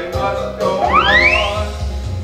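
Stage-musical performance: sung music with instrumental accompaniment, with one sliding upward swoop in pitch about a second in.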